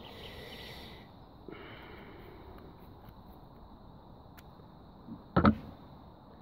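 Scissors cutting a paper pH test strip in two, a quiet snipping over a faint steady high-pitched tone. Near the end comes one short, loud, sharp sound.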